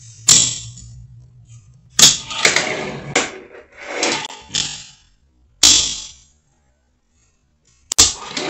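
Fingerboard tricks on a curved wooden ramp: a run of sharp clacks as the small deck pops and lands, each followed by the little wheels rolling across the wood, in several bursts over the first six seconds.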